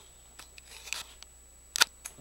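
Handling noise on a handheld camera: a few sharp clicks and taps over a quiet small room, with the loudest right at the start and another near the end.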